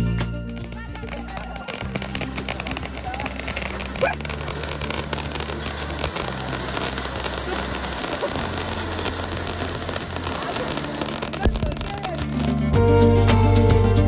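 Flower-pot fountain fireworks spraying sparks with a dense crackling hiss, under background music with a steady bass line; the music comes up louder near the end.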